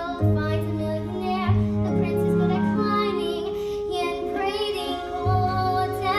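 A girl singing a musical-theatre song over instrumental accompaniment, holding long notes.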